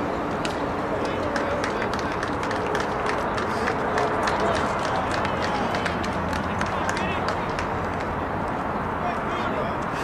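Ballpark ambience: indistinct voices of spectators and players over a steady rushing outdoor noise, with scattered light clicks.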